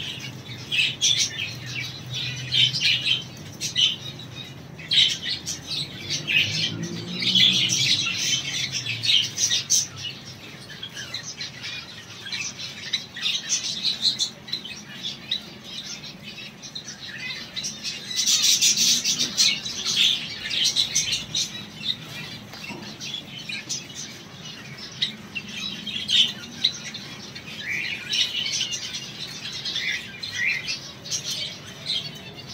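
A flock of captive finches and other small cage birds chirping and calling without pause, many voices overlapping into a dense chatter that swells into louder bursts several times.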